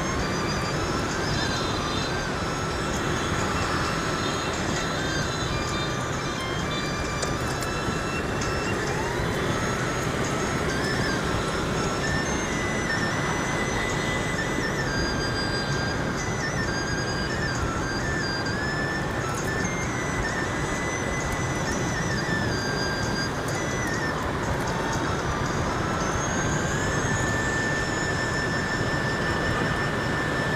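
Steady road noise of a motorbike ride through dense scooter traffic: engine, tyres and wind on the microphone. Faint background music with a slow melody of held notes runs over it.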